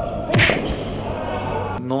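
A single hard thump about half a second in, over a steady background din.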